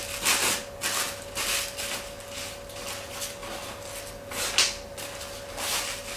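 Tissue paper wrapped around a bouquet rustling and crinkling as hands tie it with yarn and set it down, a string of short rustles, the loudest a little after the middle. A faint steady hum runs underneath.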